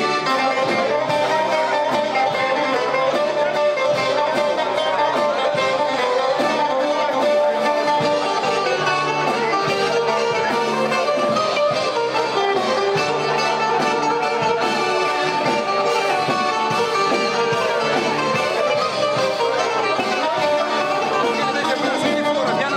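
A band playing dance music, led by plucked string instruments, with a steady beat.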